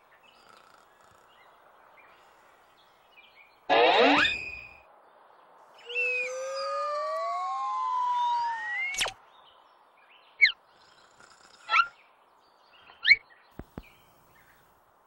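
Whistle-like tones. A loud falling burst comes about four seconds in, then several gliding tones cross each other for about three seconds and end in a sharp click. Three short chirps and two clicks follow near the end.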